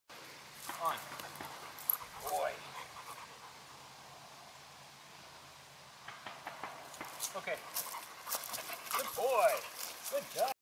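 Short spoken cues to a German Shepherd, with the dog panting. A run of light clicks and rustles comes in the last few seconds as the dog climbs down and moves off.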